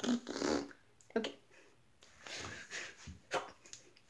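A person making a string of throat-clearing and straining mouth noises in short, separate bursts.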